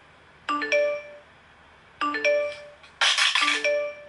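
Phone notification chimes: a short rising chime of a few quick notes, repeated several times with some overlapping. A brief burst of hiss comes about three seconds in.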